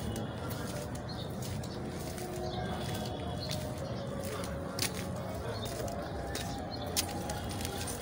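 Footsteps of people walking along an outdoor lane, short scattered steps over a steady low background rumble of street ambience.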